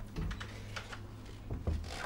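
A few light, irregular taps and clicks of a hand against a wooden door, with a soft bump near the end, over a steady low room hum.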